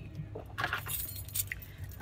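Metal jingling in a few short clinks and rustles as a handbag is moved about, over a steady low car hum.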